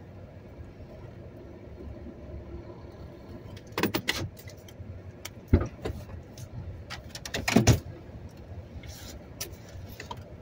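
Steady low hum of a stopped vehicle's running engine heard from inside the cab, with a handful of sharp clicks and clunks a few seconds in and near the end as the driver moves about in his seat.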